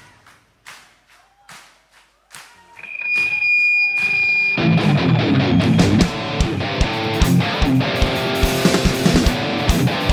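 Live band music: a quiet stretch with a few scattered drum or cymbal hits and a held high note, then about four and a half seconds in the full band comes in loudly, with electric guitar strumming over drum kit.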